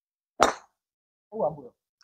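A single sharp crack of a driver striking a golf ball off the tee, about half a second in.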